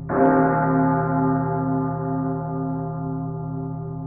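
A deep bell tolling: struck once just after the start, then ringing on with a slowly wavering, pulsing tone as it fades.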